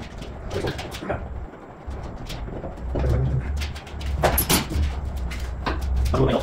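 Knocks and clanks of hand tools at work in a car's rear wheel arch over a low steady hum, with a sharp clink about four seconds in.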